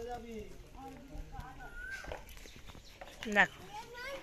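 Voices of people talking in the background, with a louder spoken "no" near the end and a single faint knock about halfway through.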